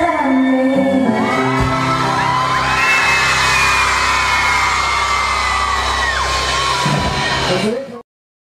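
Live pop band holding the final chord of a song while a crowd of fans screams and cheers with high, held shrieks. The sound cuts off just before the end.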